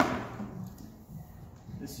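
One sharp knock at the very start, then quieter rustling and bumping as the cable and a flexible solar panel are handled.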